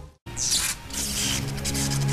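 The sound cuts out for a moment, then a short burst of hissing noise comes in, followed by background score with sustained held tones that swell toward the end.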